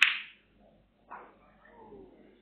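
Snooker balls striking: a sharp click as the cue ball hits an object ball. A softer ball knock follows about a second later.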